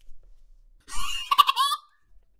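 A man's loud, high-pitched squealing laugh, about a second long, starting about a second in.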